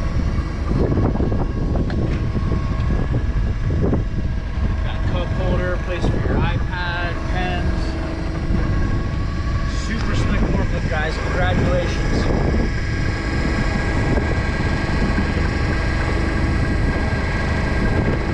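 Doosan GC25P-5 propane forklift engine idling steadily, with wind buffeting the microphone. Faint voices come through around six and eleven seconds in.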